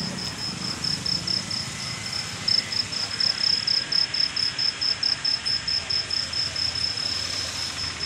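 A cricket chirping, a high, steady chirp repeating about five times a second without a break.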